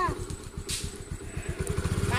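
Motor scooter engine idling with an even putter. The pulses quicken and grow louder at the very end as the throttle opens to pull away.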